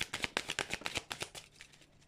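A deck of tarot cards being shuffled by hand, packets of cards slapping against each other in quick clicks about eight times a second. The shuffling slows and almost pauses about a second and a half in.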